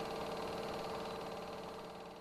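Steady mechanical hum of a home-movie film projector running, slowly fading in the second half.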